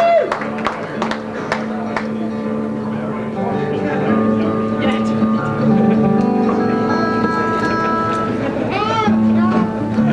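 Steel-string acoustic guitar played solo, picked single notes ringing out over a sustained low note. A short voice-like sound comes near the end.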